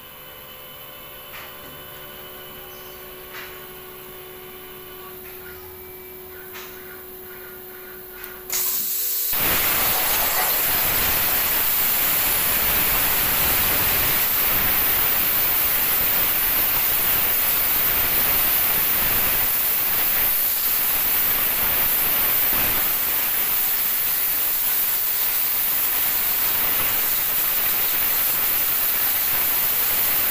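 CNC cutting torch on a gantry table, with a quiet machine hum and a few clicks, then a loud steady hiss that starts suddenly about eight and a half seconds in as the torch cuts through steel plate, throwing sparks.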